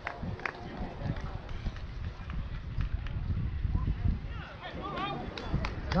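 Distant, indistinct voices over a low wind rumble on the microphone, with two sharp knocks in the first second; the voices grow louder near the end.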